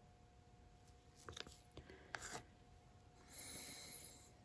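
Faint scraping and ticking of a wooden craft stick working wet acrylic paint on a tile: a few short scrapes in the middle, then a brief soft rubbing hiss near the end.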